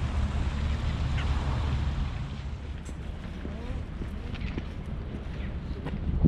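Outdoor harbour ambience: a steady low rumble and hiss, heavier in the first two seconds, with a few faint short high calls now and then.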